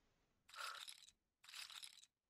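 Two short, faint clatters of casino chips, the online roulette game's sound effect as bets are placed on the table, about a second apart.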